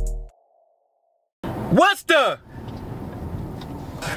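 Background music cuts off, then about a second of silence. A short wordless voice call follows, rising then falling in pitch, and then a steady low hum of noise inside a car.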